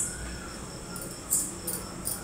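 Crickets chirring steadily in the background, with two brief soft hisses near the end as salt is sprinkled from a small clay bowl onto fish in masala paste.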